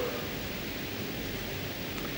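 Steady background hiss of the room and recording, with no distinct events.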